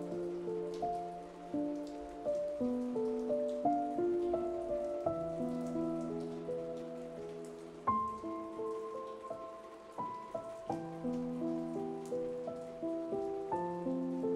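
Slow, gentle solo piano melody of single sustained notes, over steady rain falling in the background.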